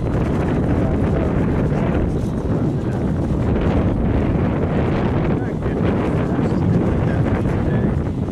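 Wind buffeting the microphone: a steady low rumble that masks the field sounds.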